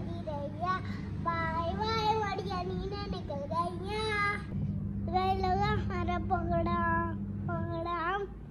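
A young child singing in drawn-out, held notes. A steady low hum runs underneath and stops shortly before the end.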